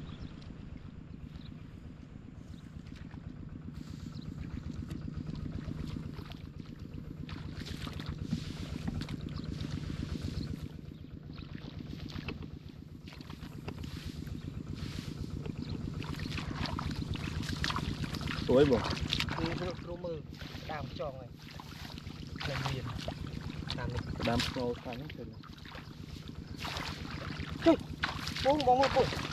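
Footsteps splashing and squelching through shallow water and mud, with repeated short splashes, over a steady low hum. A man's voice breaks in briefly about two-thirds of the way through.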